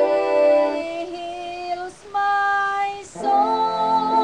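A woman singing a slow gospel song over sustained electronic keyboard chords. The held notes break off briefly twice, about two and three seconds in.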